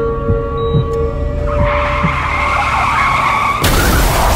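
Car tyres screeching, starting about a second and a half in and ending abruptly in a sudden loud crash near the end, over a dark music drone.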